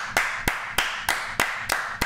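Two people clapping their hands in a steady run of about three claps a second.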